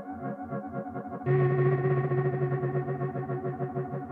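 Dave Smith Instruments Tetra four-voice analog synthesizer playing a demo patch, with a little added reverb. Sustained chord tones sit over a fast pulsing low part, and a louder, brighter note comes in just over a second in.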